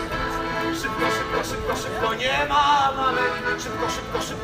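Piano accordion playing a song's instrumental passage, held notes and chords sounding steadily under a moving melody.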